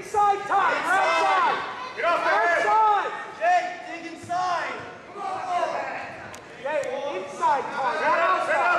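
Several people shouting, their raised voices overlapping and echoing in a gymnasium, with words not made out.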